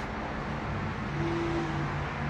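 Steady outdoor street noise with distant traffic and a low hum. A little over a second in, a faint higher tone joins it for about half a second.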